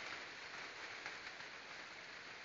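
Faint, steady hiss of rain falling.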